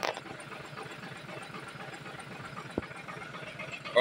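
Truck engine idling steadily, with a brief knock at the start and a faint tick near three seconds in.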